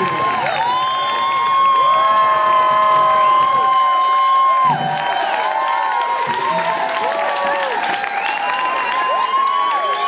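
A crowd cheering and whooping, several voices holding long yells that overlap, loudest in the first half, with some clapping.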